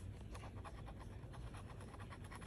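Metal bottle opener scraping the coating off a scratch-off lottery ticket in quick, repeated short strokes, faint.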